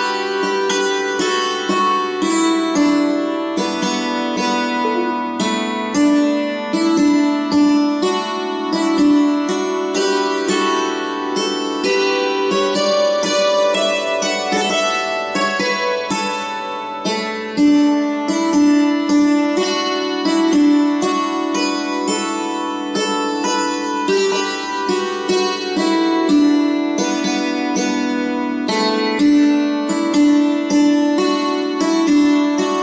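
Hammered dulcimer played with two hammers: a waltz melody in D, a steady stream of struck string notes that ring on over one another.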